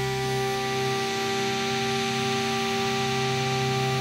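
Synthesizer drone: several steady held tones sounding together over a soft hiss. The deepest bass note drops away just after the start.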